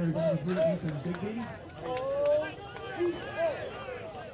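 Men's voices talking and calling, quieter than the play-by-play commentary, with a few sharp clicks.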